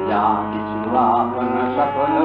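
A male voice sings long, held, ornamented notes with a wavering pitch over a steady drone, in a slow devotional style.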